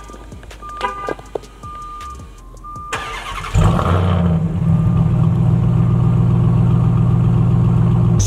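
A few short electronic beeps, then the 2021 Ram TRX's supercharged 6.2-litre Hemi V8 cranks about three seconds in and catches with a loud flare. It settles into a steady, deep idle. This is a warm start, with the engine already at temperature.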